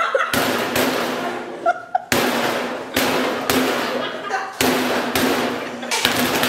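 Open-hand slaps on a raw chicken breast lying on a plate: about seven sharp smacks, unevenly spaced roughly a second apart, with laughter between them.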